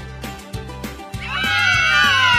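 Upbeat background music with a steady beat, and about a second in a loud horse whinny begins over it, its pitch wavering and then falling away.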